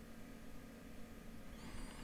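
Quiet room tone with a faint steady low hum, and faint thin high tones coming in near the end.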